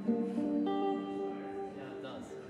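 Live church band playing an instrumental passage: held chords that change twice within the first second, then ring on.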